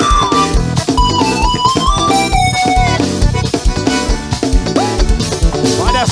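Forró band playing an instrumental passage with no singing: a melody of held notes stepping up and down over a steady kick-drum beat and percussion.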